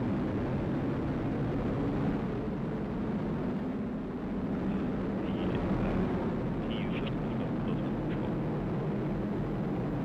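Atlas V 421 rocket's RD-180 first-stage engine and two solid rocket boosters running seconds after liftoff, a steady low rumble as the rocket climbs away.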